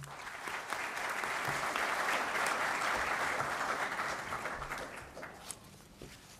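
Applause from a seated audience of delegates at the close of a speech. It swells over the first two seconds and dies away shortly before the end.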